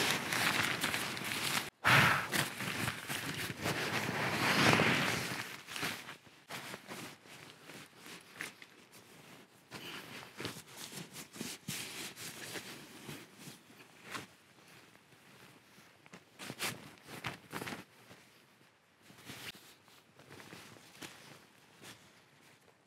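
A nylon pump sack being squeezed, pushing air into a sleeping mat, for about the first two seconds. Then footsteps on leaf litter and rustling of nylon fabric, loud for a few seconds, then sparse and quieter.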